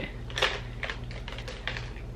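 A quick, irregular run of about eight light clicks and taps, with a steady low hum underneath.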